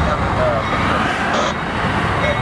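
Union Pacific diesel-electric locomotives, led by a GE ES44AC, running under power as they pull a freight train away. A steady, deep engine rumble with track noise.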